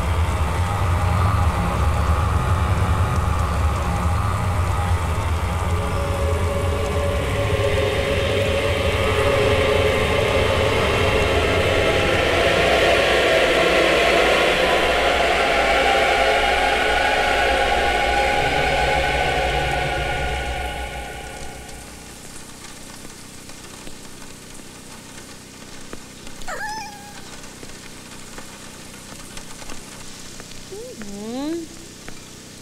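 Steady heavy rain under a low rumble and a swelling sustained drone that fades out about two-thirds of the way in, leaving quieter rain. A single short, high gliding cry sounds near the end.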